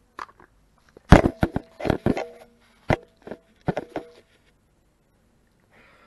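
A quick run of about a dozen sharp knocks and clatters right at the microphone, starting about a second in and stopping around four seconds in, with a brief ringing hum under the loudest ones: the sound of things being handled against or beside the camera.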